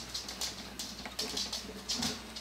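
Light scratching and irregular small clicks from a thin steel wire, about the gauge of a guitar's first string, being handled against the side of a classical guitar and a clamp-on guitar support as it is threaded behind the support.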